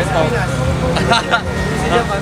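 Several people talking close by, over a steady low background rumble of a busy street crowd.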